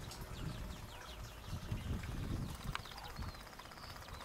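Faint outdoor background: a small bird chirping in quick runs of short falling notes, over a low uneven rumble.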